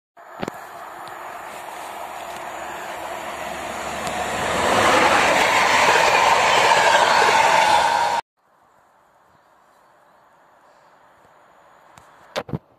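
Passenger train passing at speed close by: the rushing rumble of the coaches grows louder, peaks, then cuts off suddenly about eight seconds in, leaving only a faint steady hiss.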